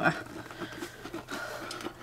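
Faint rustling and handling of a soft, part-set glitter resin sheet as hands press it over a bowl and lift it off.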